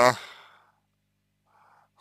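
A man's word trailing off, then a pause with a faint short breath before he speaks again.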